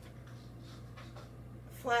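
Faint rustling and soft handling noises as a mop-yarn craft bunny is moved about on a table, over a steady low hum. A woman starts speaking near the end.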